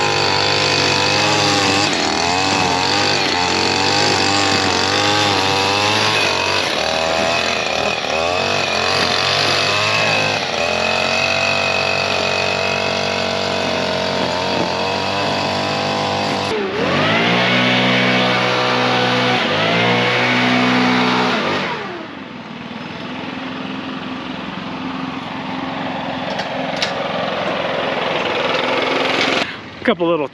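Leaf vacuum loader's engine running loudly with an uneven, wavering pitch. It changes abruptly about halfway through and shuts off about two-thirds of the way in, leaving a quieter background hum.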